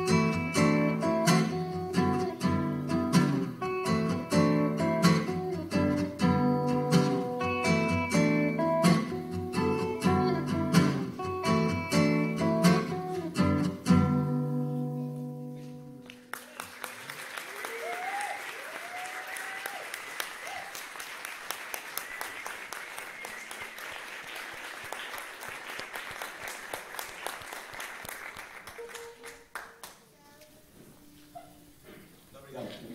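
Guitar playing the close of a song and ending on a held chord that rings out about fourteen seconds in. An audience then applauds, with a few shouts early in the applause, and the applause dies away near the end.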